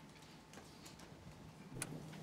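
Quiet room tone of a large hall with a faint steady hum and a few light scattered clicks, then one sharper click near the end.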